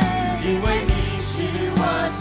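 Live worship song sung in Mandarin by several singers over a band and string orchestra, with a beat of low drum hits underneath.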